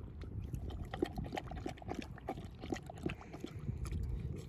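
A basset hound's wet mouth after drinking from a water bowl: a quick, irregular run of small smacks, clicks and drips as water and drool drip from his jowls, over a low rumble.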